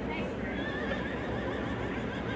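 A horse whinnying, over a steady background of outdoor arena noise.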